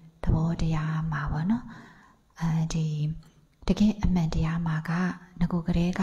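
Only speech: a woman talking into a handheld microphone in short phrases, with two brief pauses.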